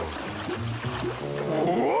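A low, growling creature voice over background music, with a spoken 'what' near the end.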